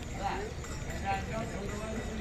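Several people talking indistinctly over a low steady rumble, with a couple of short clacks.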